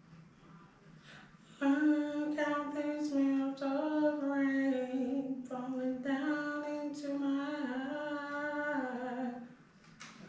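A woman singing a background-vocal harmony line unaccompanied, holding long, steady notes. She comes in about one and a half seconds in and moves between a few pitches with short breaks. She stops shortly before the end.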